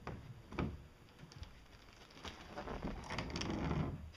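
Handling noises from working on a large boat panel: a few separate knocks in the first two seconds, then a longer scraping rustle that builds and is loudest near the end.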